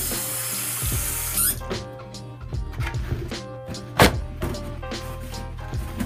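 Background music, with a burst of water splashing for about the first second and a half, and a single sharp knock about four seconds in.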